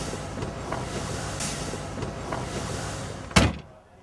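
A truck running steadily, then a single sharp knock about three and a half seconds in, after which the sound drops away.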